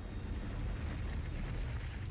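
Deep, steady rumble of a sinking ocean liner's hull with a rushing noise over it, from a film sound mix. It swells slightly about half a second in.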